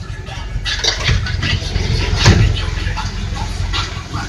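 Steady low rumble of a city bus engine heard from inside the passenger cabin, with one sharp knock a little past the middle.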